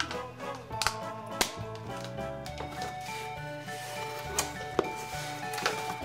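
Light instrumental background music, with several sharp clicks and taps from plastic Play-Doh cans being handled and knocked against each other and the box.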